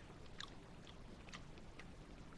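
A person chewing a mouthful of fresh pineapple, faint, with short clicks of the mouth about twice a second.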